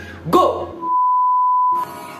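A single steady, high-pitched beep, about a second long, with all other sound cut out while it lasts: a censor bleep over a spoken word, following a brief burst of speech.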